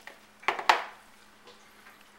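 Two sharp knocks of kitchenware on a countertop about a fifth of a second apart, the second louder and ringing briefly, then faint room sound.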